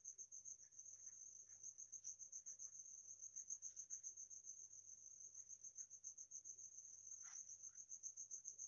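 Faint, steady, high-pitched insect trill that pulses rapidly, with quiet scratches of a ballpoint pen writing on paper.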